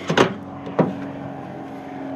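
Toyota 4x4 pickup's door latch releasing with a sharp click as the outside chrome handle is pulled, then a second, softer click about half a second later as the door swings open.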